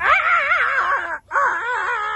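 A voice giving two long, high, wailing cries whose pitch wobbles quickly up and down, with a short break about a second in.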